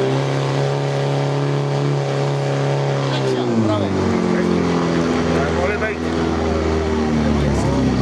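Portable fire pump engine running hard, feeding water to the hose lines, then dropping to a lower speed about three and a half seconds in as it is throttled back once the timed run has ended.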